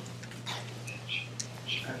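Faint whispering with a few small clicks over a steady low hum.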